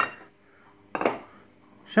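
A single short clack of a loose ceramic floor tile piece knocking against a hard surface as it is handled.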